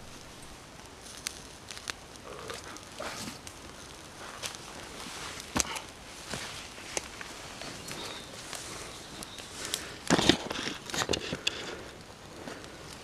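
Campfire of split wood crackling, with scattered sharp pops. About ten seconds in comes a louder cluster of knocks and rustles.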